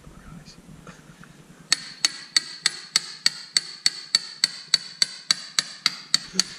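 Hammer blows on a steel rod set in the crankshaft's pilot bearing bore, a steady run of about three strikes a second with a metallic ring, starting a couple of seconds in. The rod is packing bread into the bore so that the pressure pushes the old pilot bearing out.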